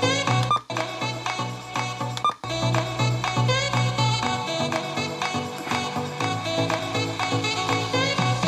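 Music played from cassette on a Panasonic RQ-SX30 Walkman through a small external speaker, with the S-XBS bass boost on and a heavy bass line. The music cuts out briefly twice, about half a second and two and a half seconds in.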